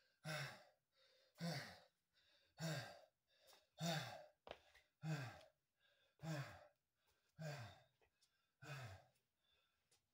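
A man's heavy, voiced breathing while winded after a long burpee set: eight exhales about a second and a bit apart, each falling in pitch.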